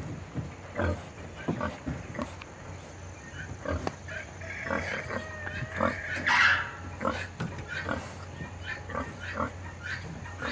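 A Berkshire boar grunting in short, repeated grunts, with a longer, louder, higher-pitched call around the middle.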